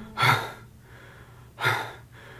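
A man breathing out heavily twice, about a second and a half apart, sounding queasy after eating a five-pound gummy bear.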